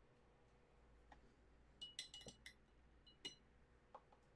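Light clinks of a paintbrush knocking against a water jar, with a brief ringing tone: a quick flurry of several about two seconds in, then two more a moment later, against near silence.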